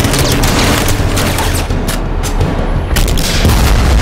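Movie-soundtrack battle effects: rapid bursts of gunfire with bullets striking an armoured vehicle, over dramatic score music, ending in a heavy explosion boom.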